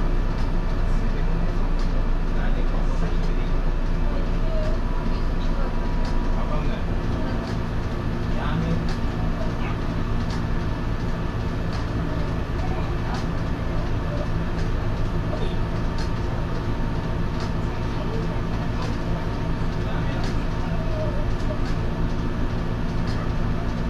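Steady hum and running noise of an electric railcar standing at a station, with faint scattered clicks.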